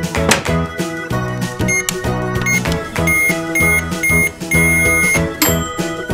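Cheerful background music throughout. In the middle, a toy microwave gives a run of high electronic beeps: several short beeps, then one longer beep.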